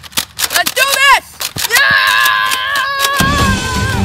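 A rapid run of sharp shots, about four or five a second, stops about a second in. A voice cries out with a rising-and-falling pitch, followed by a long, high, steady scream. Music with a low pulsing beat starts near the end.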